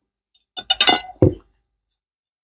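Metal fork clinking against a plate and dishes: a quick run of sharp clinks lasting about a second, ending in a duller knock.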